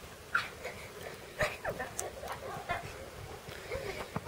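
Tajik shepherd dog puppies yelping and whining in short, scattered calls as they play in the snow, with a sharp yelp about a third of a second in.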